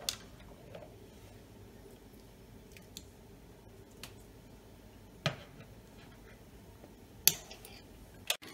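Metal tongs clicking against a tin can as it is lifted out of the pot, and the can knocking down onto a glass-top stove. There are a few sharp clicks and knocks over a quiet background, the loudest near the end.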